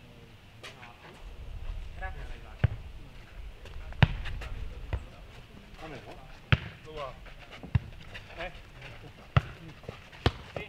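A futnet ball being kicked and bouncing on a dirt court during a rally: about six sharp thuds at uneven intervals, the loudest about four seconds in. Players' short calls can be heard faintly between them.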